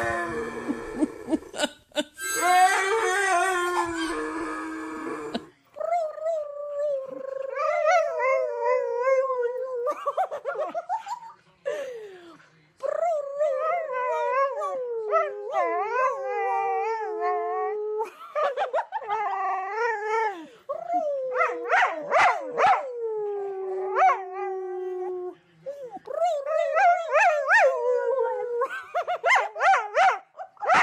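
A harmonica playing for about the first five seconds, then a dog howling: long howls that waver up and down in pitch, repeated with short breaks.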